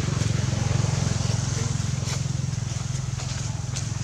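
A steady low rumble, like an engine running, with a fast even pulse and no clear change in pitch.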